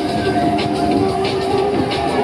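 Loud fairground music playing over the rumble and clatter of a Fabbri King Loop ride in motion, with held tones through most of it.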